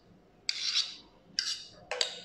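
A spoon scraping thick chocolate ganache out of a stainless steel mixing bowl: three short scrapes.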